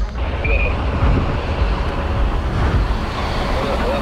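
Steady road traffic noise: a continuous rumble of cars on a busy street.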